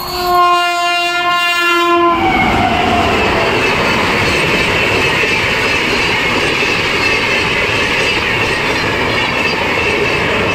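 Indian express train passing at high speed: the locomotive's horn sounds a steady multi-tone blast for about two seconds, its pitch dropping as the locomotive goes by. Then the coaches pass in a steady rush with the clickety-clack of wheels over rail joints.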